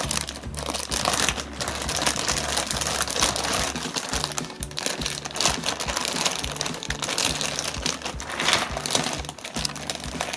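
Plastic zip-top bags crinkling and rustling as the outer bag is pulled open and the smaller bag of ice cream mix is lifted out of the ice, over background music with a steady beat.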